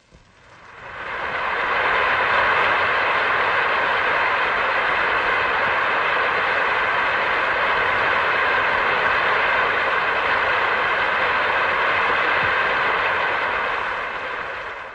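Large concert-hall audience applauding, swelling over the first two seconds into loud, steady applause that holds.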